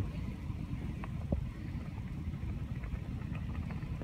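Wind rumbling on the microphone outdoors, with a few faint clicks about a second in and again around three seconds.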